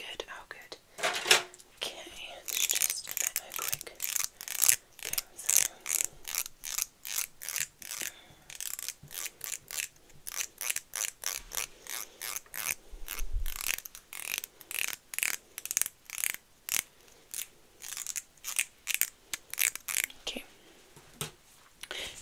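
Hands working close to the microphone in quick repeated rubbing strokes, about two to three a second, each short and crisp.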